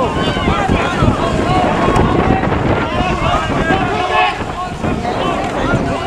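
Several voices shouting and calling over one another, the calls of players and onlookers at a canoe polo match, with wind rumbling on the microphone.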